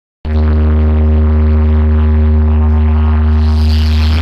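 Loud electronic music: a deep, steady bass drone with a few higher overtones, held without a beat, starting abruptly just after the opening.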